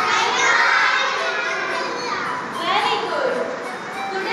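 Many young children's voices at once, high-pitched and overlapping throughout.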